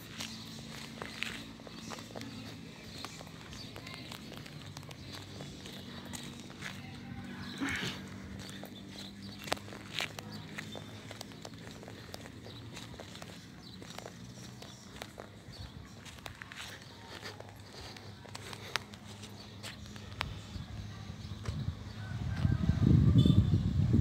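Footsteps on pavement with scattered light clicks over a faint, steady low hum of outdoor ambience; a louder low rumble swells near the end.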